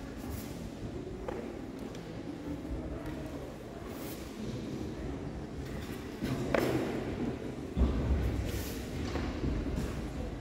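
Ambience of a large gymnasium during a karate kata, a steady murmur of spectators. About six and a half seconds in there is a sharp snap, and just before eight seconds a heavy low thud, the loudest sound, as the performer moves on the foam mats.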